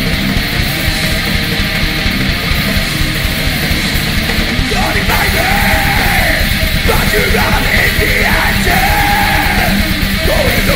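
Heavy metal band playing live: distorted electric guitars, bass guitar and fast, dense drumming. A shouted lead vocal comes in about halfway through.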